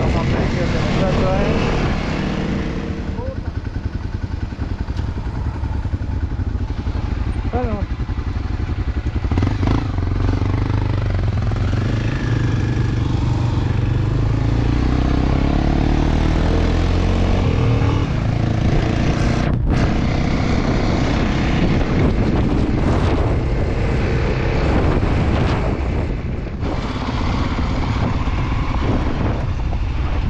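Enduro motorcycle engine running under load on a gravel road, heard from the rider's own bike, its note rising and falling with the throttle and climbing steadily for several seconds mid-way.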